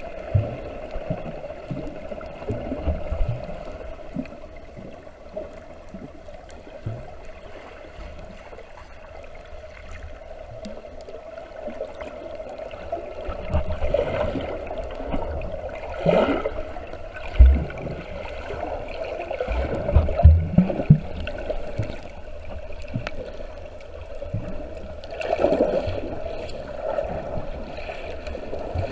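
Muffled underwater sound through a submerged camera: water moving and gurgling around the housing, with a steady hum in the background. Several low thumps come in the middle, the strongest about seventeen and twenty seconds in.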